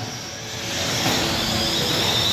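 Radio-controlled stock racing trucks running on the track, a high-pitched motor whine over tyre and chassis noise, growing louder through the second half as a truck comes close.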